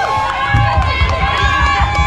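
Crowd of people talking and calling out over one another, with a low rumbling on the microphone from about half a second in.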